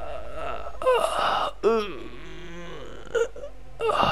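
A woman's voice moaning in pain after being struck down: short falling cries about one and two seconds in, and a brief one near the end.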